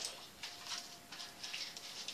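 Faint, scattered scrapes and rustles of metal tongs handling bacon on a foil-lined oven grill pan, over a faint steady hum.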